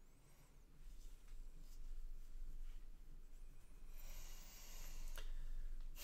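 Faint room noise: soft rustling as a seated person shifts his hand against his face and clothing, with one sharp click about five seconds in.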